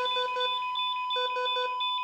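Hospital bedside patient monitor sounding an alarm: a steady high tone runs underneath while short beeps repeat in quick groups of three. This is the kind of alarm a monitor gives when a patient's vital signs turn critical.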